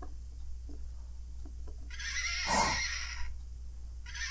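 Light knocks as a wooden puzzle piece is set into its board, then about two seconds in a recorded horse whinny, just over a second long, played thin through the toy puzzle's small speaker.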